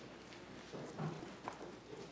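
A few faint, light knocks or taps, about a second in and again half a second later, over low room noise in a large hall.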